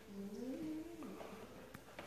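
Airedale Terrier puppy grunting softly, a faint sound that wavers up and down in pitch: somebody's not happy.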